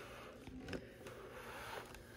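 Faint handling of a boxed doll's cardboard and plastic packaging, with one small soft knock about three-quarters of a second in.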